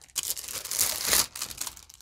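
Plastic packaging crinkling and rustling as a cutting mat is pulled out of its bag, busiest in the first second and thinning out toward the end.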